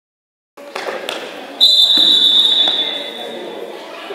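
A referee's whistle blown in one long, loud, steady blast about one and a half seconds in, fading away over the next two seconds, over the voices and echo of a gym. A single sharp knock, like a bouncing basketball, comes about a second in.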